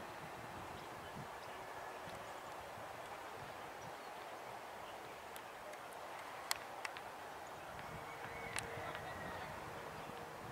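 Quiet outdoor ambience: a steady low hiss of background noise, with a few short sharp clicks about six and a half to seven seconds in and again near eight and a half seconds.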